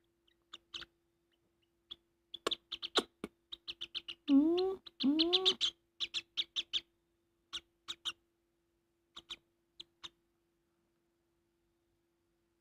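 Young lovebird chick giving quick high chirps and clicks in short runs, with two longer, lower, gliding calls about four to six seconds in.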